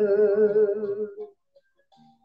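A man singing a hymn unaccompanied into a microphone, holding a long note with vibrato that ends about a second and a half in, followed by a pause.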